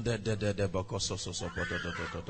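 A man's voice in a rapid, even run of short syllables at a fairly steady low pitch.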